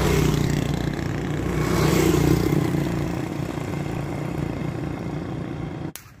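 A motor vehicle engine running steadily with road noise. It grows louder over the first couple of seconds, then holds and cuts off abruptly near the end.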